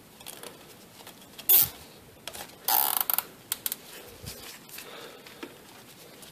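A nylon zip tie being ratcheted tight around a wiring harness: a short zip about a second and a half in and a longer one about halfway through, with light clicks and rustles of handling around them.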